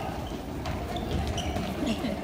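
Many children's feet stepping and scuffing on a wooden stage floor as they dance, a loose run of faint, irregular knocks.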